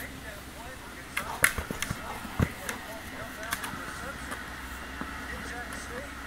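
A dog nosing and mouthing a large ball on grass: a cluster of sharp knocks about a second in, then a dull thump, over a steady outdoor background.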